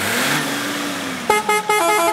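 Vehicle sound effect for a logo sting: a rushing drive-by with an engine hum that rises and then falls, then a quick run of about five short horn toots near the end.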